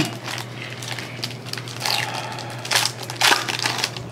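Trading-card pack wrappers crinkling and crackling as card packs are torn open and handled, with a few sharper crackles about two and three seconds in.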